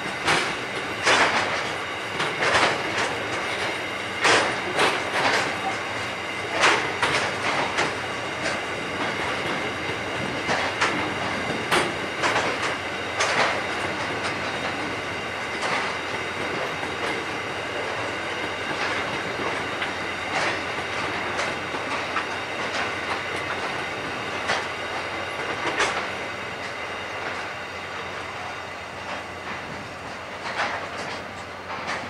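Coal train's hopper wagons rolling past over a bridge, their wheels clicking over rail joints above a steady rolling rumble, with a faint steady high ringing. The clicks come thick and loud for the first dozen seconds or so, then thin out.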